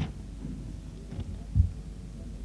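A pause in speech: low steady hum and room tone picked up through a lectern microphone, with a brief click at the start and a single soft low thump a little past halfway.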